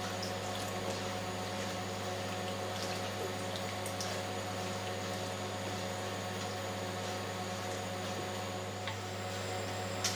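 A wooden spoon stirring peas, onion and tomato sauce in a frying pan on a gas stove, the pan hissing faintly as it cooks, with a few light clicks of the spoon. A steady electrical hum runs underneath.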